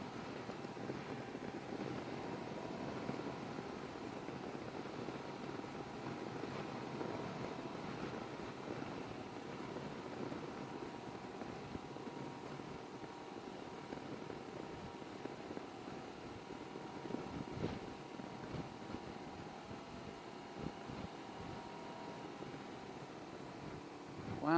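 Can-Am Ryker three-wheeled motorcycle cruising at a steady speed: even road and wind noise with the engine running underneath as a faint steady tone.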